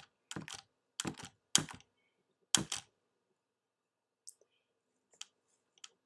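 Computer keyboard keystrokes: four quick clusters of key presses in the first three seconds, then a few faint single taps.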